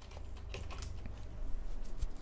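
Typing on a computer keyboard: a run of light key clicks while a search term is entered.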